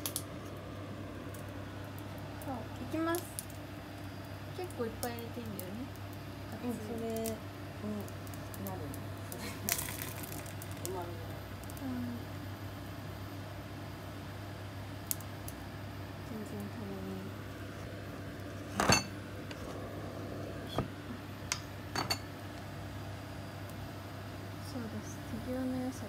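A metal spoon stirring and scooping beaten egg in a stainless steel bowl, with scattered sharp clinks of metal on metal; the loudest clink comes about three-quarters of the way through.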